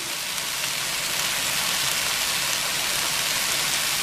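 Frozen mixed vegetables sizzling in a hot electric skillet: a steady hiss.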